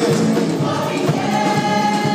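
Live gospel music: a band with keyboard and drums playing while voices sing together, holding long notes.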